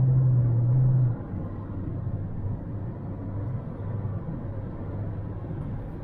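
Inside the cabin of a 2010 Kia Optima with its 2.0-litre four-cylinder engine, on the move: a strong steady engine drone drops away suddenly about a second in. After that comes a quieter, lower engine hum over road and tyre noise.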